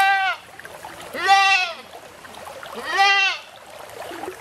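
A goat bleating three times, about a second and a half apart, each call rising then falling in pitch.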